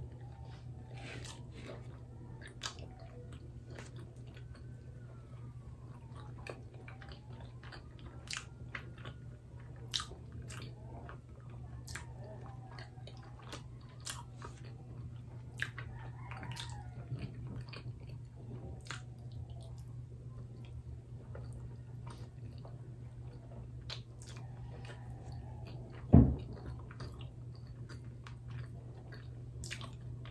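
Close-up chewing and mouth clicks of a person eating soft, sticky steamed rice cakes (kutsinta and puto), over a low steady hum. A single loud thump comes near the end, the loudest sound in the stretch.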